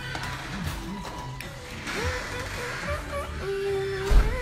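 Music playing, with a sung melody that slides between notes and holds one long note near the end.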